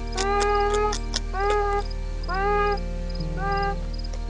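Beaver vocalising: a series of about four short whining calls, each rising in pitch and then levelling off, with a few sharp clicks among the first calls. A steady musical drone runs underneath.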